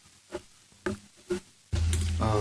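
Quiet meeting-room pause with three faint short pitched sounds about half a second apart. Near the end a conference microphone is switched on with a sudden jump in level and a steady low hum.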